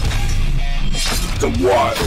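Heavy rock intro music with a crashing, shattering sound effect about a second in; a voice starts speaking near the end.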